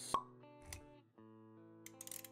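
Intro music of held notes, with a sharp pop just after the start, the loudest sound, and a softer low thump near the middle.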